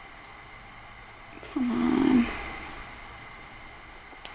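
A woman's short, low hum, falling slightly in pitch, about a second and a half in; otherwise faint room hiss.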